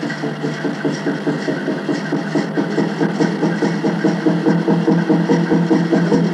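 Native American Church water drum beaten in a fast, even rhythm, its skin ringing at a steady low pitch, in the pause between sung verses of a peyote song.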